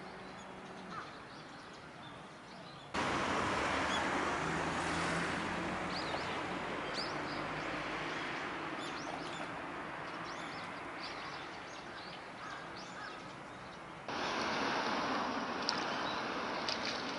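Steady outdoor ambient noise by the water, a broad hiss that jumps abruptly louder about three seconds in and again near the end. Faint, short, high chirps are scattered through it.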